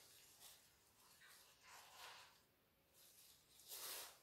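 Faint rustling swishes of a sheer fabric being swept about, a few soft strokes, the loudest near the end.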